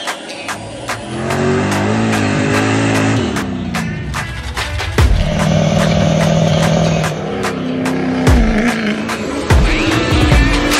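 Ford 6.0 Powerstroke V8 turbo-diesel in a pickup, revving up, holding and dropping back, mixed with music that has a steady beat.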